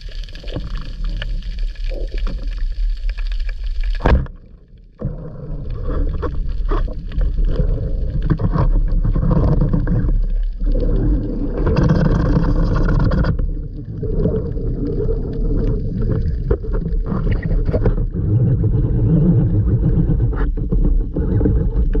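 Underwater sound picked up by a submerged action camera: water rushing and gurgling over the housing as the diver swims up, with a steady low hum underneath. A sharp knock and a short drop-out about four seconds in.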